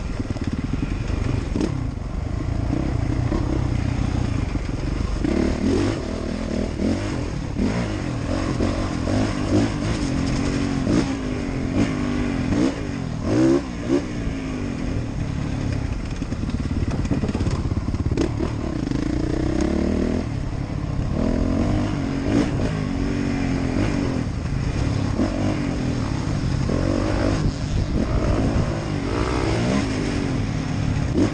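Off-road racing motorcycle's engine revving up and down over and over as the rider works the throttle and gears along a rough dirt track, with a few sharp knocks from the bike about halfway through.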